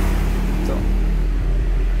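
A steady low hum under a constant background hiss.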